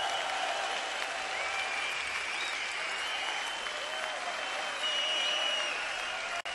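Concert audience applauding, with some whistling over the clapping.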